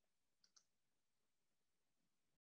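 Near silence with two faint quick clicks, one right after the other, about half a second in.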